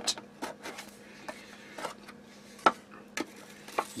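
A small metal tin being handled and its lid opened: a few light metallic clicks and scrapes over soft rustling, the sharpest click about two-thirds of the way through.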